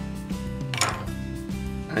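Background music, with a short rasp of duct tape being handled just under a second in.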